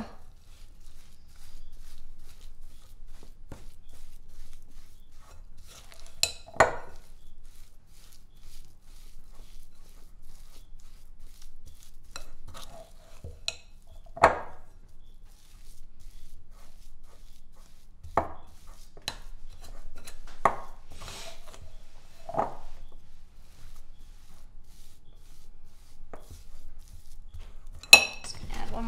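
A utensil stirring stiff, dry peanut butter dough in a glass mixing bowl, with irregular knocks and clinks against the glass. The loudest come about six and fourteen seconds in.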